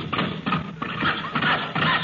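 Comic radio sound effect of a car engine being cranked and sputtering without catching: a rapid, uneven chugging that the engine cannot get going.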